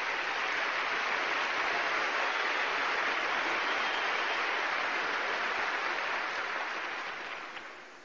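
Large audience applauding steadily, the applause dying away over the last second or so.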